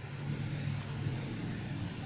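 Low, steady motor hum.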